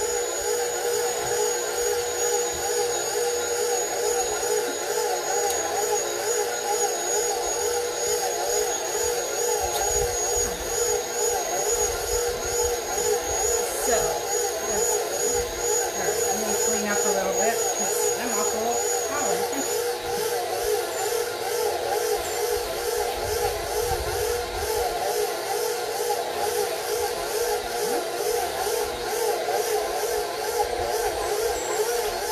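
Electric stand mixer's motor running steadily, its dough hook kneading a soft, moist egg bread dough in a steel bowl.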